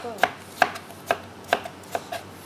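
Knife slicing raw potatoes on a cutting board: a short, sharp knock on the board about twice a second.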